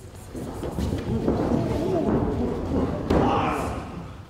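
Voices talking, with a single sharp thump about three seconds in.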